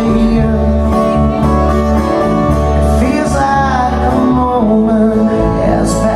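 Live acoustic band playing a song: acoustic guitars with sustained low bass notes and a voice singing.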